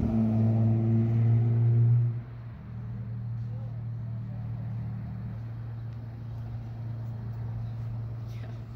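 Steady low hum of an idling vehicle engine, with a few overtones. It is louder for the first two seconds, then drops suddenly to a quieter steady hum.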